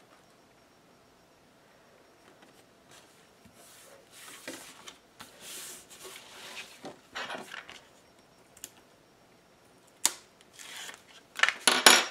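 Cardstock album pages being folded over and pressed flat by hand onto score tape, with papery rustling and rubbing. A sharp tap comes about ten seconds in, then a few quick clicks and taps near the end as the next sheet is picked up off the countertop.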